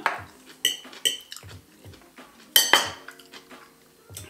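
Metal cutlery (fork, knife and spoon) clinking and scraping against ceramic plates while eating, with a few sharp clinks, the loudest about two and a half seconds in.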